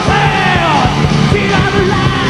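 Live heavy metal band playing at full volume: distorted electric guitars, bass and drums, with a high wailing line that slides up and back down in the first second.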